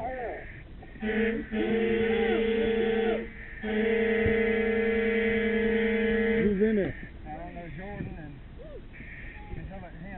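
Fire apparatus air horn sounding two long, steady blasts, the first about two seconds and the second about three seconds, separated by a short gap. On a fireground this is the evacuation signal, ordering crews out of a burning house whose conditions are deteriorating.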